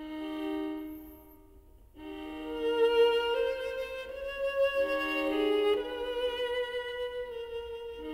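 A quartet of violas playing slow, sustained chords. A held note fades almost to nothing, then a new chord enters about two seconds in, and the harmony shifts every second or so after that.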